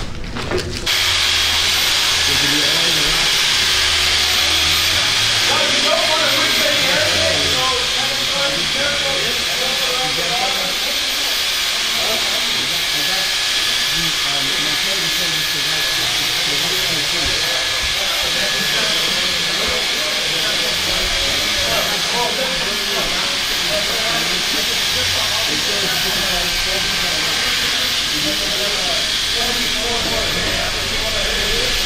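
Milwaukee handheld paddle mixer running steadily at speed, a loud even motor whine and hiss as it stirs traffic-coating material in a pail. It starts about a second in. Faint voices run underneath.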